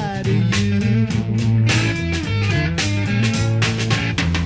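Psychedelic blues-rock band playing: electric guitar with notes sliding in pitch over bass and regular drum strokes.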